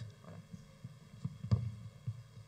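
Room ambience in a pause: a low hum with faint stirring, and a single sharp thump about halfway through.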